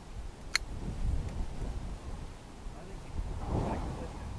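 A single sharp metallic click about half a second in as the single-shot TC Contender pistol is handled while being readied to fire. Low wind rumble on the microphone runs underneath.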